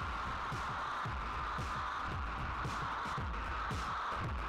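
Drum loop from Stylus RMX played through an overdriven chain of insert effects (radio delay, tape saturation, tape-style delay), giving a dense, filtered, distorted groove. Kick drums fall in pitch about twice a second under a steady midrange band. It sounds very bizarre.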